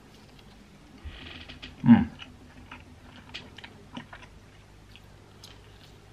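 A person chewing a mouthful of chargrilled chicken fillet: faint, irregular clicks of the mouth. An appreciative 'mm' comes about two seconds in.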